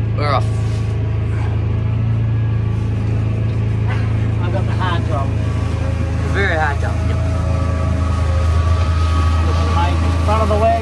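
Massey Ferguson tractor engine running steadily at working speed, driving a trailed forage harvester chopping maize, heard inside the cab.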